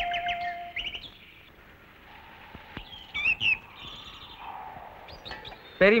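Birds chirping: a few short, quavering calls about three seconds in, over faint background ambience.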